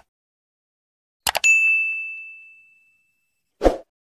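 Subscribe-button animation sound effects: a quick double mouse click about a second in, then a bright notification-bell ding that rings out and fades over about two seconds, and a short thump near the end.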